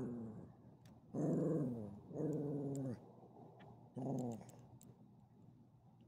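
A dog growling in three drawn-out bouts, each sliding slightly down in pitch, the last one shorter.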